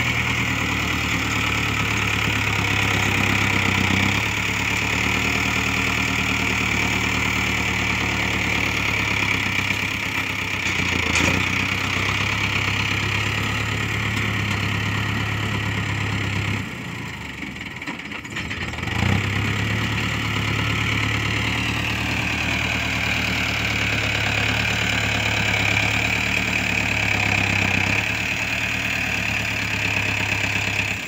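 Diesel tractor engine running steadily under load as its front dozer blade levels soil. The engine note drops for a couple of seconds past the middle, then picks back up.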